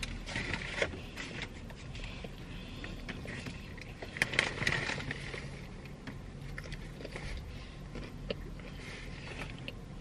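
A person chewing a mouthful of fried chicken sandwich, with small wet clicks and rustles, loudest about four seconds in, over a faint steady low hum.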